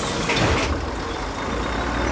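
Cartoon excavator sound effect: a heavy engine rumbling steadily as the tracked digger rolls forward, with a short hiss about half a second in.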